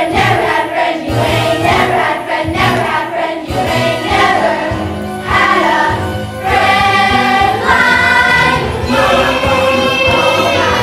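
Group of voices singing a stage-musical song together over instrumental accompaniment, with longer held notes in the second half.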